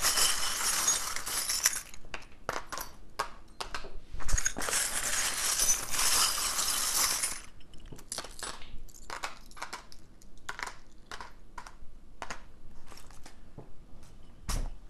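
Small charms rattling and clinking together as they are shaken in a container: two long spells of continuous jangling, with runs of separate small clinks between and after them.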